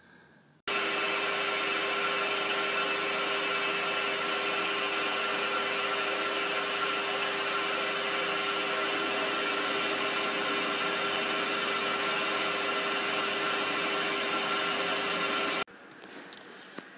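Small metal lathe running steadily while a 12 mm three-flute end mill held in its three-jaw chuck mills a slot in a steel slide, a steady whine with several held tones. It starts suddenly about half a second in and cuts off just before the end.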